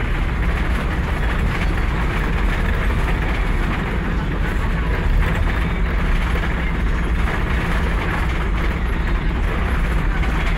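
Steady low rumble of road and engine noise inside the cabin of a moving road vehicle travelling at speed.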